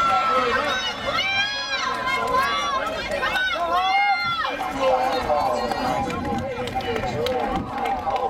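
Spectators at a trackside shouting encouragement at sprinters, several voices yelling over one another. The shouts are loudest and most strained in the first half.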